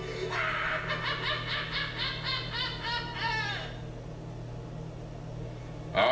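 The Joker laughing in the fan film: a man's rapid laugh, about four ha's a second, dropping in pitch and stopping a little past halfway, over a low steady musical drone.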